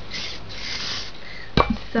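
Aerosol hairspray can spraying, a steady hiss lasting about a second, followed by a single sharp knock about a second and a half in.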